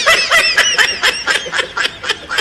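Men laughing hard in quick repeated bursts, several a second, fading toward the end.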